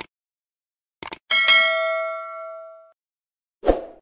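A few short clicks, then a single bell-like ding about a second in that rings out and fades over about a second and a half, followed near the end by a short thump, as in a video intro's sound effects.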